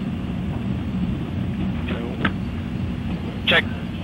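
Steady low rumble of an Atlas IIAS rocket's engines in powered flight, heard from a distance, under short bits of launch-control radio talk.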